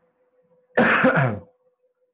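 A person clearing their throat once, a short voiced burst that falls in pitch, lasting under a second.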